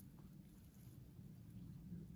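Near silence: only faint low background noise, with a couple of faint ticks just after the start.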